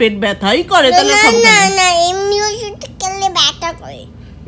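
A toddler's voice: a few short sounds, then a long, drawn-out, high-pitched vocal sound held for about two seconds, then short bits of speech near the end.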